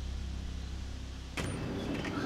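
Steady low outdoor rumble, with a single sharp click about one and a half seconds in, the front door's latch as the door is opened.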